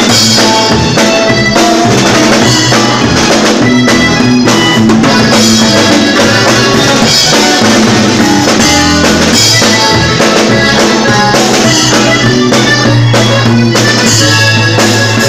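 Live norteño band playing: accordion over a drum kit keeping a steady beat, with a string instrument underneath.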